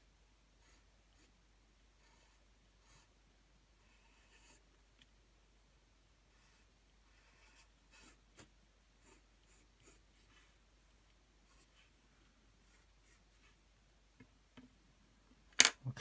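Wooden graphite pencil scratching on paper in a string of short, separate strokes. Near the end there is a single louder, sharp noise.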